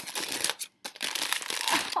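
Crinkling and tearing of silver foil gift wrap as a small package is unwrapped by hand, a rapid crackle with a brief break a little under a second in.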